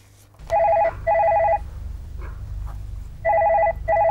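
Desk telephone ringing with a warbling electronic double ring: two short rings, a pause of about a second and a half, then two more. A low rumble sits underneath the rings.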